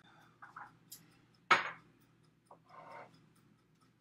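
Objects being handled on a kitchen counter: a few light knocks, and one sharp clack about a second and a half in, as a serving platter is picked up.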